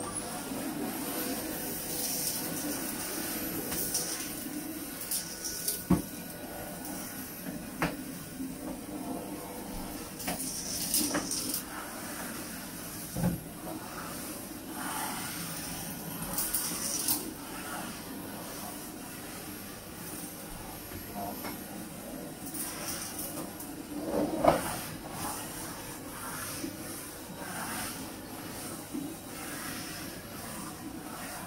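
Bagless cylinder vacuum cleaner switched on and running steadily, its high motor whine coming up just as it starts. The floor nozzle knocks a few times against the hard floor and furniture, loudest about three-quarters of the way through.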